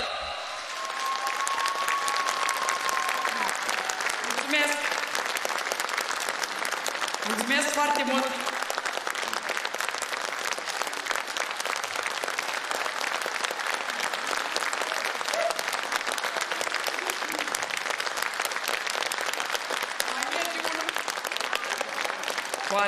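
Theatre audience applauding steadily, many people clapping at once, with a few short voices heard over the clapping.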